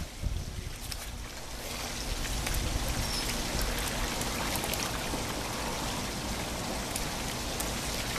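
Swimming-pool water splashing and lapping as a steady rushing wash, with a few faint clicks; it grows a little louder about a second and a half in.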